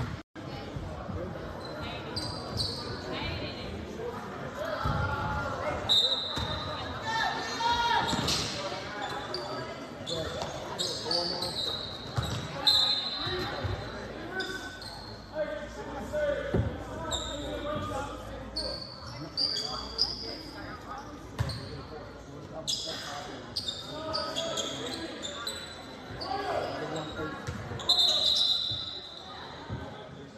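A basketball bouncing on a hardwood gym floor, with short high squeaks of sneakers and the voices of players and spectators, all echoing in a large gymnasium.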